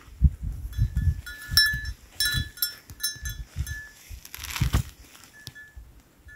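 Dog whining: a run of short, high-pitched whimpers, several a second, over a low uneven rumble, with a brief rough burst just before the end.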